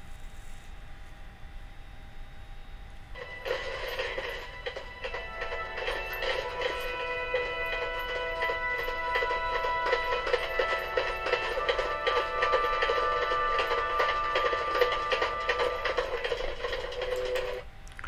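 Film soundtrack music playing back from a Blu-ray in VLC media player: faint held tones at first, then fuller music with long sustained notes from about three seconds in, which stops just before the end.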